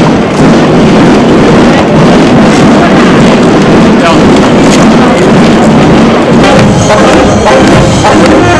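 Brass band marching music playing in the street, with crowd voices mixed in. Sharp percussive knocks come in near the end.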